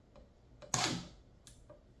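An ICS airsoft electric gun's S3 electronic trigger unit reacting as the fire selector is moved from semi to safe: faint clicks and one short, sharp mechanical burst from the gearbox about three-quarters of a second in. This is the detensioner cycling to release the pre-cocked spring so it is not stored compressed.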